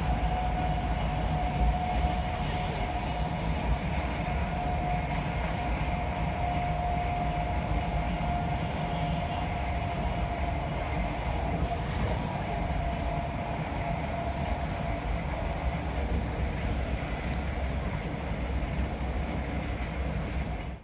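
Passenger train running at speed, heard from inside the carriage: a steady rumble and running noise with a steady high whine that fades out about three-quarters of the way through.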